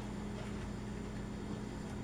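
Steady electrical hum with several fixed low tones, from a battery charger pushing current through a CRT television's deflection coil.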